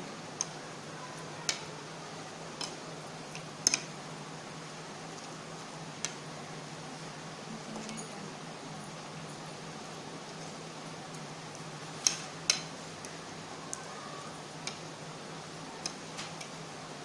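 A metal spoon clinking now and then against a plate while mashing boiled egg with mayonnaise, about ten separate clinks with the loudest pair near the end. A steady low hum runs underneath.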